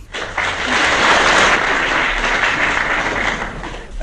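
Audience applauding on an old archive recording: dense, steady clapping that eases slightly near the end.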